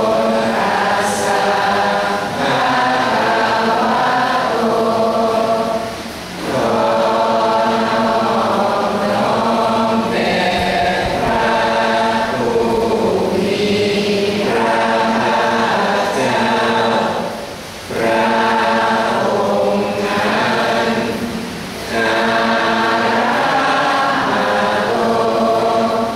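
Buddhist chanting, several voices in unison intoning long, steady phrases with brief pauses for breath a few times.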